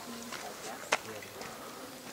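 Footsteps of someone walking on a dirt path, a step about every two-thirds of a second, with one sharper, louder step about a second in.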